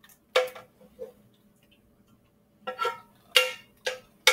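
A utensil knocking against a metal skillet while pasta is scraped and tapped out of it into bowls: about six sharp knocks at uneven intervals, each with a brief ring, two of them close together near the end.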